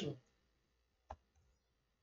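Near silence with one short, faint click about a second in, typical of a computer mouse click advancing a presentation slide.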